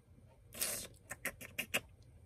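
A brief rustle about half a second in, then a quick, irregular run of about seven light clicks.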